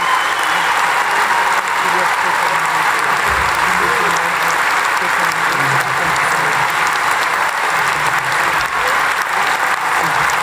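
Large arena crowd applauding steadily after a live skating and music performance.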